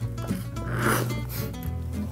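A short slurp about a second in: hot chocolate sucked up through a Tim Tam biscuit with its corners bitten off, over background acoustic guitar music.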